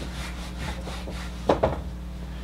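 Felt whiteboard eraser rubbing back and forth across the board in quick repeated strokes, followed by two short knocks about one and a half seconds in.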